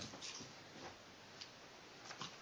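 A few faint, irregular light clicks and taps.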